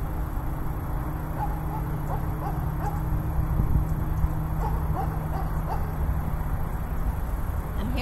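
Dog barking faintly in the background, a few short barks about two seconds in and another run of about four barks around five seconds in, over steady outdoor background noise.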